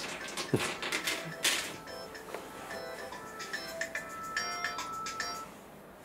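A phone ringtone: a simple electronic melody of short, steady beeping notes at several pitches. It starts about two seconds in and stops about five and a half seconds in. A few clicks and handling rustles come before it.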